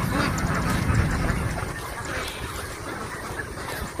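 A flock of native Philippine ducks (itik) quacking in the background, with wind rumbling on the microphone.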